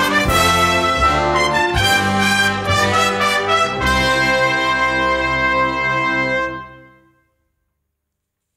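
Brass band playing an instrumental passage with sharp accents, then landing on a final held chord about four seconds in. The chord dies away to silence by about seven seconds.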